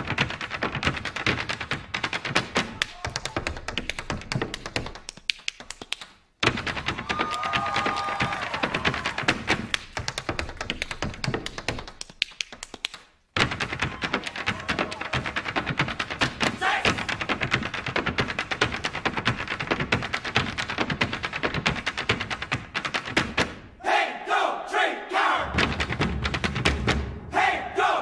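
A line of Irish step dancers in hard shoes tapping in unison on a stage floor: a dense, fast clatter of heel and toe strikes that stops dead twice.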